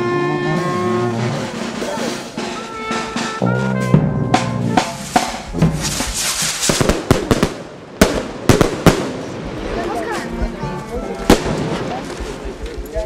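Music with steady held notes, then a string of sharp, loud cracks at irregular intervals, with a brief hiss in between: cohetes (firework rockets) going off.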